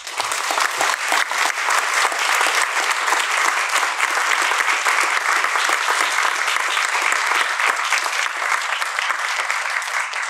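Audience applauding steadily after a lecture.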